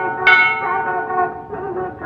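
A temple bell struck once just after the start, ringing on with a long fading tone that carries over from an earlier strike. A wavering melody sounds under the ringing in the second half.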